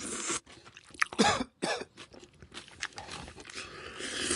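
Eating sounds of a man eating rice by hand: a run of short, noisy chewing and smacking sounds, with a short, loud throat sound like a cough a little after a second in.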